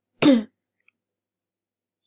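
A woman clears her throat once, briefly, just after the start.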